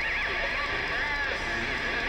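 Heavily distorted electric guitar playing with squealing pitch bends and whammy-bar glides over the full metal band, recorded from the audience.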